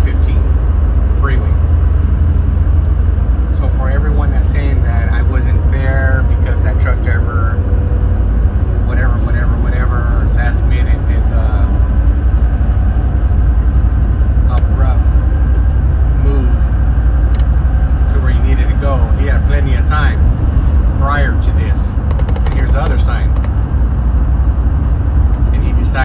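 Steady low road and engine rumble inside a moving car's cabin at freeway speed, with a voice talking at times over it.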